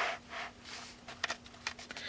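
A hand brushing softly over a paper page of an art journal, with a few faint clicks in the second half.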